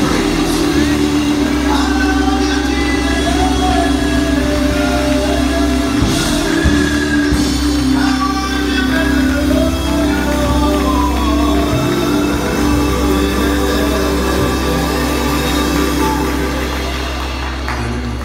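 Live gospel music in a church: singing over a band with a steady deep bass. The music falls away near the end.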